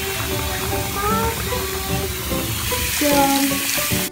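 Bath bomb fizzing in bathwater, a steady crackling hiss, with music playing over it; the hiss cuts off suddenly at the end.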